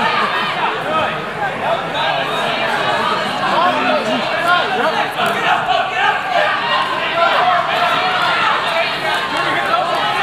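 Indistinct chatter of a crowd, with many voices talking over one another throughout, in a large indoor hall.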